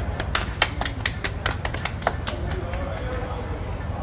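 Hands clapping in quick applause, about six claps a second, stopping a little past halfway, over a steady low background hum.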